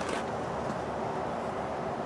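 Steady outdoor background hiss, even throughout with no distinct events.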